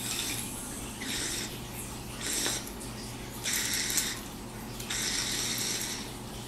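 Water bubbling in a small glass dab rig as it is drawn through, in a series of short pulls, each a brief burst of hiss and bubbling.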